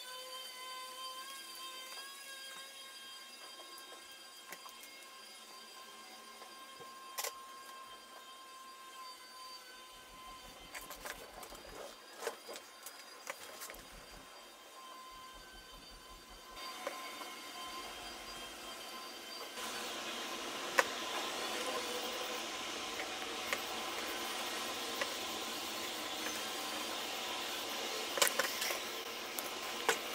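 Steady mechanical whirring with scattered clicks and knocks; the whirring gets noticeably louder about twenty seconds in.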